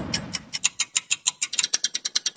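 Clock ticking sound effect, sharp ticks that speed up to about a dozen a second. At the start, the tail of a falling whoosh fades out.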